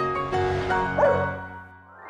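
Piano music with a single short dog yip about a second in. The music then fades out.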